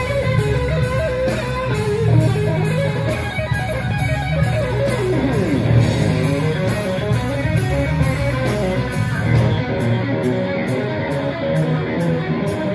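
Live electric guitar solo on a Stratocaster-style guitar, a melodic line of quick notes with sliding pitch drops about four to five seconds in, over bass guitar and drums.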